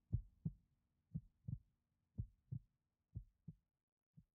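Heartbeat sound effect: pairs of low thumps, lub-dub, about one beat a second, growing gradually fainter.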